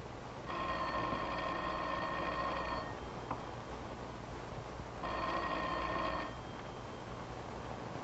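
Telephone bell ringing twice: a ring of about two seconds, a pause of about two seconds, then a shorter ring.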